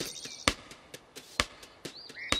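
Soft, light taps: two clear ones about a second apart with fainter ticks between.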